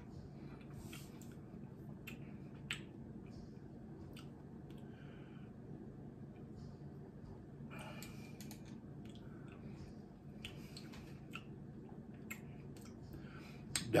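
Quiet tasting sounds: faint lip smacks and mouth clicks as a man savours a spoonful of hot sauce, with a short breath about eight seconds in, over a low steady hum.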